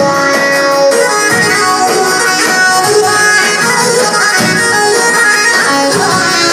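Live instrumental folk dance music from a Korg electronic keyboard: a lead melody of held and moving notes over a backing, steady and loud, with no singing.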